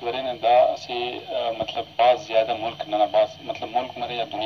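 Speech only: a voice talking without pause, with the narrow, boxy sound of a broadcast.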